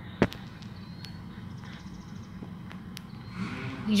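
A low steady background hum, broken by one sharp click about a quarter second in and a few fainter ticks later.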